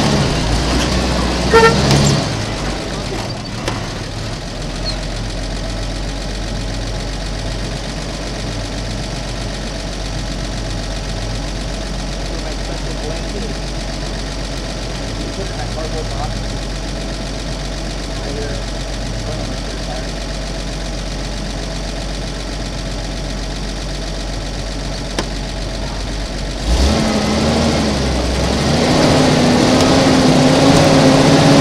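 Toyota Land Cruiser FJ45's engine pulling at low speed while rock crawling, a steady low rumble. Near the end the engine gets louder and its pitch climbs as it takes more throttle.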